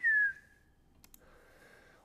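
A short whistle from a man, one clear note sliding down in pitch for about half a second, in place of the word left unsaid after "full of". Then near silence, with a couple of faint clicks about halfway through.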